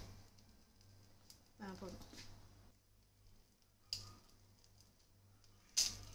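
Mostly quiet room tone, with a short stretch of faint speech about two seconds in and two brief clicks, one near the middle and one near the end.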